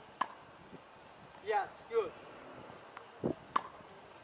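Tennis ball struck by a racket: a sharp pop just after the start and another near the end, with a duller knock just before the second. Two short voice calls come in between.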